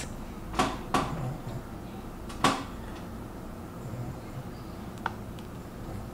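Handling noise close to the microphone: three short soft knocks in the first three seconds, then a faint click about five seconds in, over a low steady room hum.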